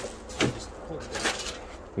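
Old metal car parts on a cluttered shelf being handled and pulled out, giving a few light knocks and scrapes.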